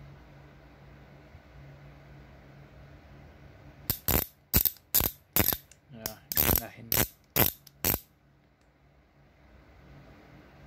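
Ratchet head of a 17/19 mm ratcheting spud wrench being worked back and forth by hand, its pawl clicking: about ten sharp clicks and short rasps over some four seconds, starting about four seconds in.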